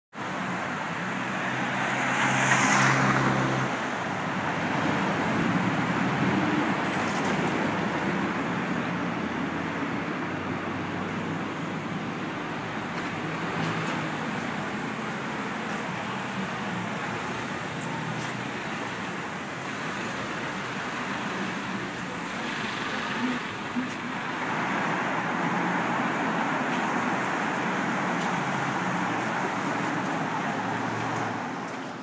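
City street traffic: a steady wash of passing cars, with a louder vehicle going by about two to three seconds in.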